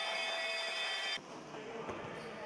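Faint room sound of an indoor futsal hall, with a few steady high tones in the first second. It drops suddenly to a quieter hall sound at a cut a little over a second in.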